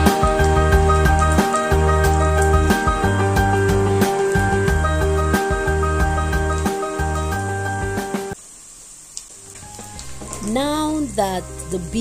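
Background music over beef strips frying in oil with a sizzle. The music stops about eight seconds in, leaving the faint sizzle on its own, then new music and a voice begin near the end.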